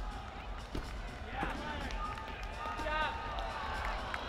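A gymnast's dismount landing on the mat, a thud about a second in, over the voices of an arena crowd that rise briefly afterwards.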